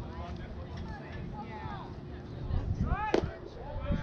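Spectators talking and calling out around a baseball diamond. About three seconds in comes a single sharp crack of a bat hitting the ball, with a loud shout over it as the ball is put in play.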